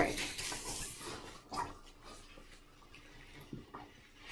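Cardboard and plastic packaging rustling and sliding as a large doll box is tipped out of its cardboard shipping carton. The rustle fades after about a second, leaving a couple of faint knocks.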